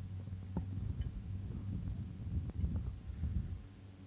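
Low, uneven rumble of sprint car engines heard from across the track as the field rolls around on a pace lap.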